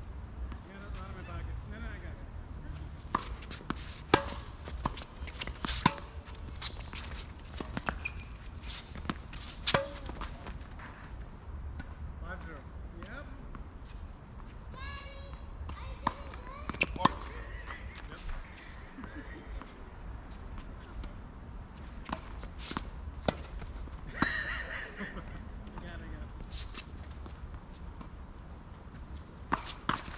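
Tennis balls struck by rackets and bouncing on a hard court during a doubles rally: sharp pops at irregular intervals. Brief calls from players come in between.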